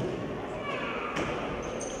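Handball being thrown and caught in a reverberant sports hall: a sharp ball thud at the start and another about a second in. A short high squeak near the end, over the murmur of players' voices.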